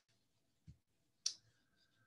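Near silence, broken by a soft low thump and then a single brief sharp click a little past the middle.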